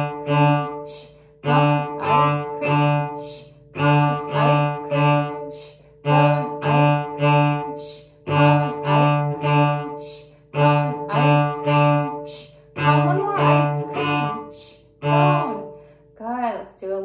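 Cello open D string bowed in the 'ice cream shh cone' practice rhythm. Each group is three short strokes on the same low note followed by a brief rest, and the group repeats about every two seconds.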